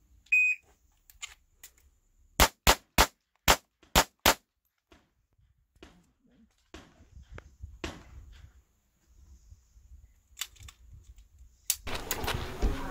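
A shot timer gives one short electronic beep as the start signal. About two seconds later a pistol fires six rapid shots in about two seconds at a single target, a fast draw-and-fire string. Fainter clicks and one more sharp crack follow near the end.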